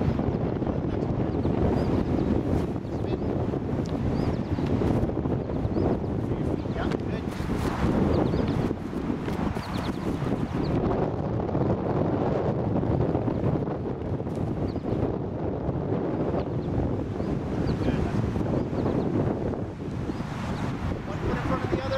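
Wind blowing across the microphone: a steady low noise with no breaks.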